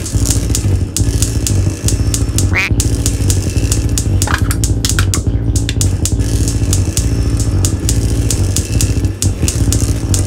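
Experimental electronic music from modular and analogue synthesizers: a low buzzing drone that pulses unevenly, laced with fast irregular clicks, and short rising pitch sweeps about two and a half and four seconds in.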